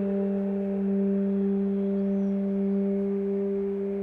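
Trombone choir holding one long, steady low chord of several sustained notes.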